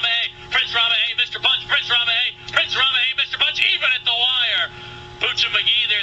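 Male track announcer calling the stretch run of a harness race in fast, unbroken speech, pausing briefly about five seconds in. A steady hum runs underneath.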